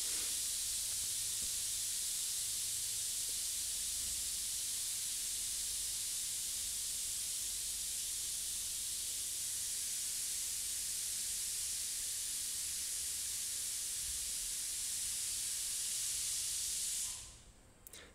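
Pressure cooker cooking rice, letting off a steady, very loud hiss of steam that cuts off suddenly about a second before the end.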